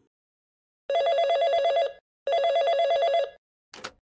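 Desk telephone ringing twice, each ring a rapid trill about a second long, then a short click as the handset is picked up near the end.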